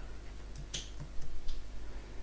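A few faint, short clicks against a low steady hum, in a pause between spoken phrases.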